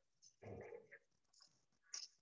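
Near silence: room tone, with one faint short sound about half a second in.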